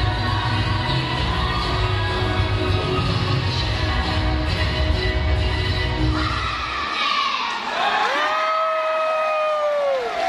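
Dance music with a steady bass beat plays and ends about seven seconds in. Crowd cheering and shouting follows, with one long held shout rising in over the last two seconds.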